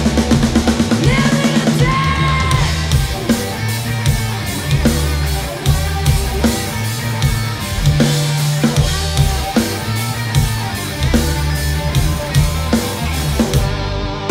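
Live punk rock band playing an instrumental stretch: distorted electric guitars, electric bass and a driving drum kit, with a bending lead guitar note about a second in and no singing.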